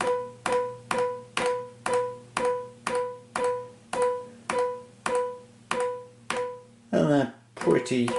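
A synthesizer's piano sound plays the same note over and over, about twice a second, each note starting with a key click from the Casio digital horn. The horn's MIDI output is driving the synthesizer over a MIDI lead, showing that the output works.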